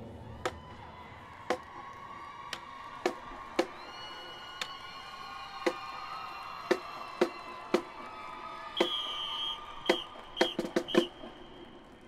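Sharp drum taps, roughly one a second, keeping a marching step for the band. Near the end the taps come closer together, with a few short high-pitched tones among them.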